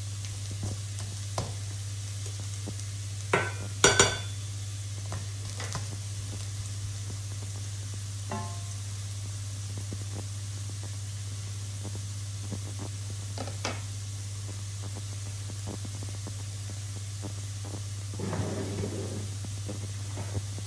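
Minced garlic sizzling gently in oil in a nonstick frying pan, toasting to the point of just starting to brown. A spatula stirs and knocks against the pan a few times, loudest in a couple of sharp clacks about four seconds in, with a longer stretch of stirring near the end. A steady low hum runs underneath.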